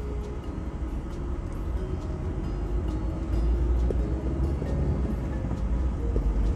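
Car interior noise while driving: a steady low rumble of engine and road noise heard from inside the cabin.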